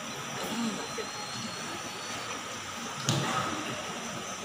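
Steady hiss of room noise with faint, indistinct voices in a large hall, and a single sharp knock about three seconds in.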